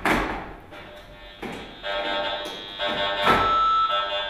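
A click as the DECT phone base is plugged in, then the audio output of a radio-frequency meter buzzing as it picks up the base's start-up transmission. The buzz gets louder in steps about two and three seconds in.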